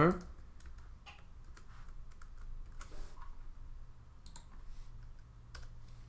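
Typing on a computer keyboard: irregular, light keystroke clicks as a line of code is entered.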